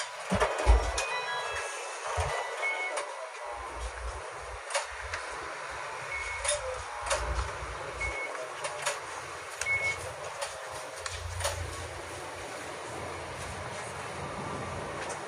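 Interior of a Sapporo A1100 'Sirius' low-floor streetcar standing still: steady faint ambient noise with scattered clicks, a few short high beeps and occasional low rumbles.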